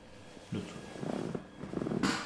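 A man's low, rough, strained groans in three short bursts starting about half a second in, as his leg is pushed toward his chest in a hip stretch.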